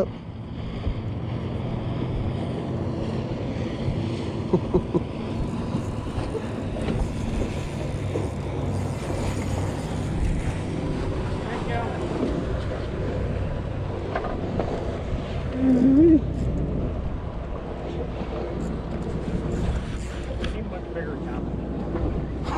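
Wind buffeting the microphone and water moving around a small fishing boat, over a steady low hum, with a couple of brief knocks.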